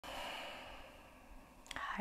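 A woman's sigh: a long out-breath close on a clip-on microphone that fades away over about a second and a half, followed by a small sharp click just before she starts to speak.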